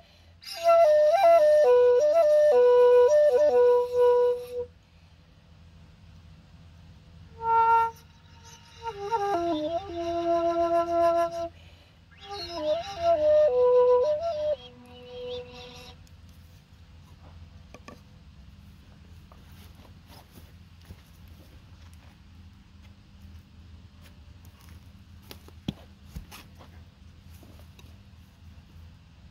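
Kalinga bamboo flute playing three short phrases of sliding, breathy notes over the first 16 seconds. The playing then stops, leaving only faint low background noise with a few small clicks.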